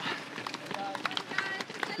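Footsteps of a pack of runners on a paved path: many quick, overlapping footfalls at race pace.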